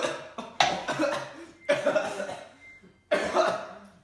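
Teenage boys coughing and gagging after swallowing a revolting homemade drink, in a series of sharp fits about a second apart.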